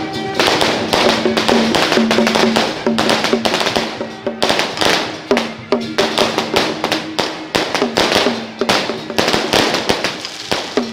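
Procession percussion: a hand drum and other percussion struck in a fast, uneven rhythm, with sharp cracks throughout and a ringing tone that dips in pitch after the strokes.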